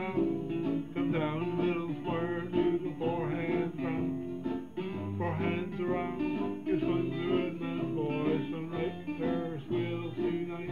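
Country music from a square dance singing-call record, led by a strummed acoustic guitar with a melody line over it.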